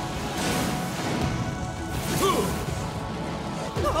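Cartoon action sound effects: a crash and swooshing energy effects over the music score, as a magic bracelet powers up.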